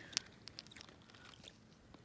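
Quiet, with a sharp click just after the start and a few fainter clicks and small handling noises after it.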